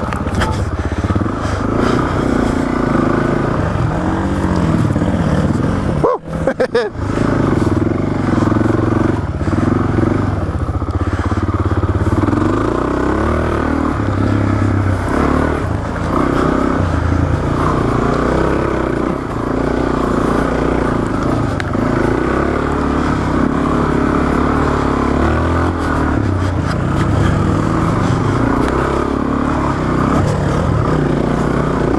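Suzuki DR-Z400S single-cylinder four-stroke engine under way on a tight dirt trail, its revs rising and falling continually with the throttle. The sound drops out briefly several times about six seconds in.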